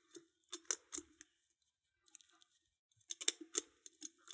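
Faint metallic clicks and scrapes of a wire tensioning tool being twisted and probed inside an Adlake railroad padlock's keyway. A small cluster of clicks comes in the first second and another near the end.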